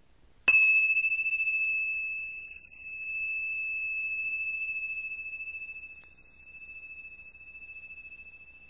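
A single high-pitched bell chime struck about half a second in, ringing out slowly with a wavering, pulsing decay. A faint click about six seconds in.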